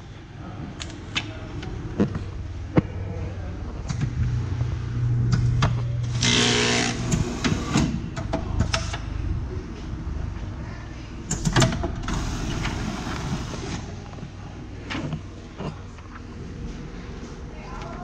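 Sterling Digibinder perfect binder running a binding cycle, milling the spine, gluing and clamping the cover onto a book. A steady motor hum carries clicks and knocks, with a louder stretch that ends in a short harsh burst about six seconds in, and another noisy patch around twelve seconds.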